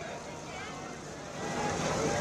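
Indistinct voices of several people talking at once over background noise, growing louder about one and a half seconds in.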